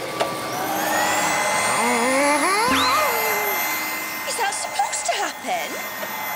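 Cartoon sound effect of a flea-vacuum appliance turned up to more power: a rushing whine that climbs in pitch, with a steady high tone under it. A wavering cry swoops up and down in the middle, and short clicks and squeaks follow near the end.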